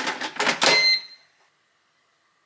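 Basket air fryer's drawer pulled out: a rattling, clattering slide of the basket, with a short high ringing tone about a second in, after which it goes quiet.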